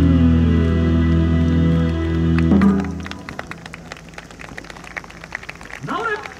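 Yosakoi dance music over the stage loudspeakers ends on a held chord, with a final accent about two and a half seconds in, then stops. Scattered claps follow, and a voice calls out near the end.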